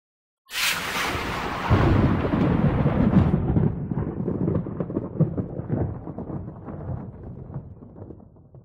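A thunder-like sound effect: a sudden crash about half a second in, then a long rolling rumble that slowly fades away.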